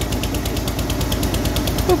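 An engine running steadily with an even, rapid knocking beat.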